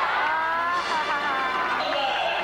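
A squealing pitched tone that slides upward, then drops in several falling glides, over a steady hall din.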